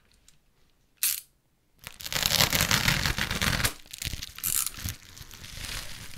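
Clear plastic bag wrapping being pulled apart and torn open by hand: a brief sharp rip about a second in, then a couple of seconds of loud continuous crinkling and tearing, easing into lighter rustling.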